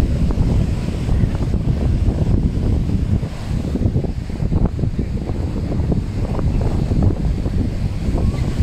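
Wind buffeting a phone's microphone, a loud uneven rumble, over the wash of waves breaking on a sandy beach.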